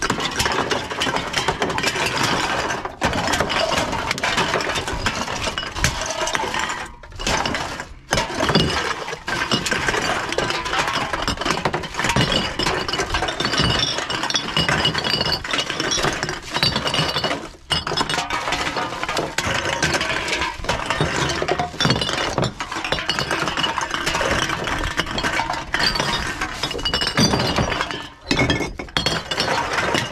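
Aluminium drink cans and glass bottles clink and clatter against each other as gloved hands rummage through a bag full of them. The clatter goes on almost without a break, with a few short pauses.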